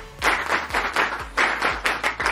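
A group of students clapping together in time, a rhythmic appreciation clap of about three claps a second.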